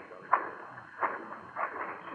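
Radio-drama sound effect of footsteps walking past: three steps in an even walking rhythm, about two-thirds of a second apart, on a narrow-band old transcription recording.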